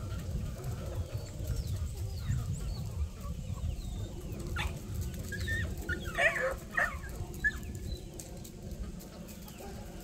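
A free-ranging flock of chickens clucking and calling, with scattered short calls throughout and a couple of louder calls a little past the middle.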